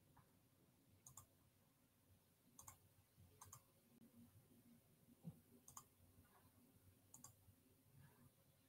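Near silence broken by about five faint, sharp clicks at a computer, a second or so apart, as the screen is switched over to a slide presentation.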